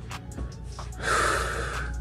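A man's long breath drawn in through the mouth, about a second long, starting about halfway through, after a few faint lip clicks.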